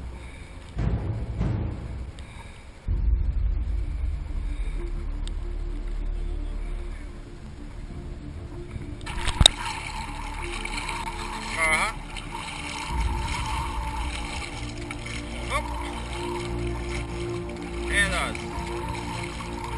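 Background music, then an abrupt change about nine seconds in to loud wind and water noise on open water, with a boat engine running low.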